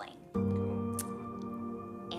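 Soft background music: a steady sustained chord that comes in suddenly about a third of a second in and holds, with a short sharp click about a second in.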